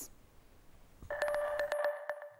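A pause, then about halfway through a short, steady electronic tone peppered with crackling clicks, lasting under a second before cutting off.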